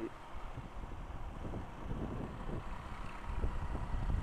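Motorcycle riding at low speed, with engine hum and road noise heard from the rider's own camera and wind rumbling on the microphone. It grows a little louder near the end.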